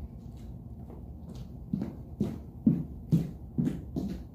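Footsteps on a hard floor, about two steps a second, beginning around the middle and going on to the end as someone walks away.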